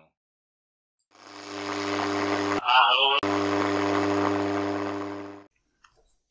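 Buzzing noise from an AM radio receiver: a steady hum under hiss that fades in about a second in and out about five and a half seconds in. Just under three seconds in, a brief warbling, voice-like sound breaks into it.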